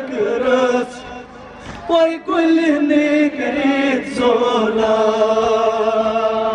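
Kashmiri noha, a Muharram lament, chanted by male voices in long held melodic lines, amplified through a loudspeaker, with a short lull about a second in.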